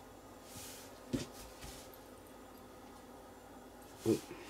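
Quiet room with faint handling noise of small metal model tank-track links being pushed and held together by hand, and one soft knock about a second in.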